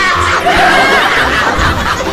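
A high-pitched snickering laugh, wavering in pitch, over background music with a steady low beat.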